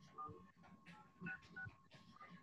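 Faint telephone keypad tones: several short two-tone beeps in quick succession, over a faint steady high hum.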